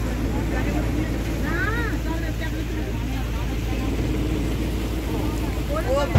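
Boat engine running steadily with a continuous low drone, with people's voices faintly in the background.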